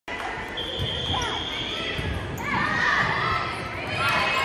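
Volleyball gym ambience in a large, echoing hall: balls thumping off hands and the hardwood floor over a background of crowd and player voices, with a few short high squeaks of sneakers on the court.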